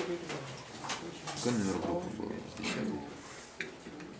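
Indistinct talking: several voices in a classroom, not clearly made out.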